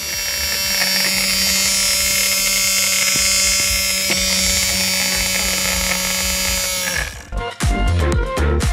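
Small DC motor driving a mini aquarium pump, running at full speed with a steady whine. It cuts off abruptly about seven seconds in.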